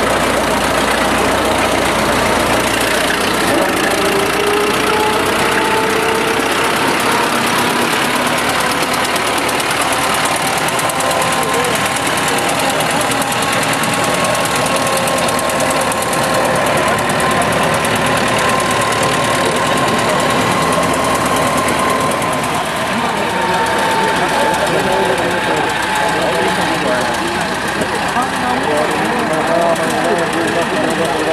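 Engine of a Hanomag WD steel-wheeled tractor running steadily under load as it pulls a plough, mixed with the voices and chatter of people around it.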